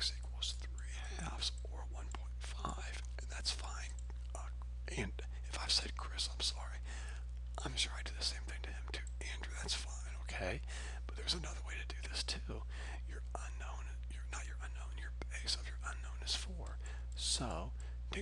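Short scratchy strokes of a stylus writing and erasing on a pen tablet, over a steady low electrical hum.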